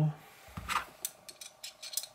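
A soft knock, then a quick run of small sharp metallic clicks: a Torx bit being fitted into the pivot screw of a folding knife with G10 handles.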